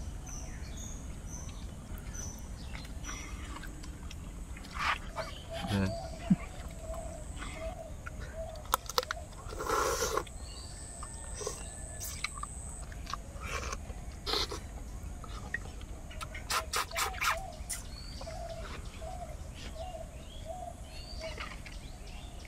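People eating rice and fish by hand: scattered wet clicks, lip smacks and a short slurp as fish is sucked and chewed, with the louder smacks in clusters. Birds call faintly in the background.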